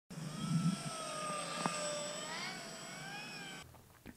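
Whine of an electric RC plane's brushless motor and four-blade propeller in flight, its pitch drifting slowly up and down with throttle and distance. It stops abruptly about three and a half seconds in.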